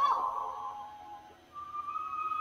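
Cartoon soundtrack music: an organ-like held chord fades away, then after a brief gap a single thin, high held tone, like a whistle, comes in near the end.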